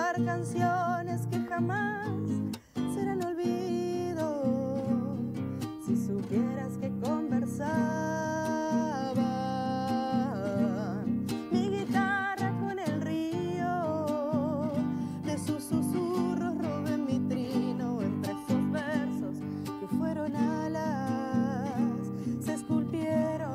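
A woman singing a folk song with vibrato on her held notes, accompanying herself on a strummed nylon-string classical guitar.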